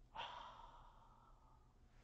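A single audible breath out, like a short sigh, close to the microphone. It starts just after the beginning and trails off within about a second.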